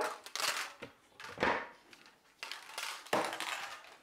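Household handling noises: four short, noisy bursts about a second apart as someone handles things at a kitchen counter and moves about.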